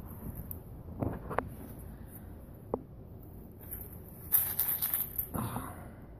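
Handling sounds from plastic Easter eggs and cellophane wrap: a few small plastic clicks and taps in the first three seconds, then a crinkling rustle of about a second beginning about four seconds in.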